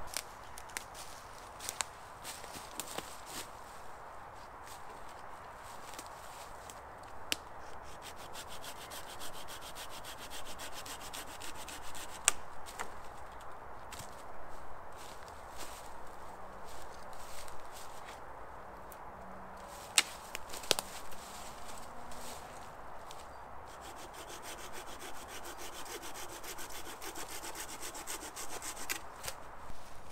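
Dry dead branches being gathered for firewood: wood scraping and rubbing, with a few sharp cracks of dry wood snapping.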